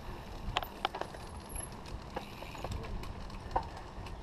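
Mountain bike ridden along a dirt trail: a steady low rumble with scattered sharp clicks and rattles from the bike over bumps.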